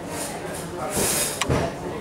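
Indistinct murmur of voices in a hall, with a short hiss about a second in and a sharp click followed by a low thump shortly after.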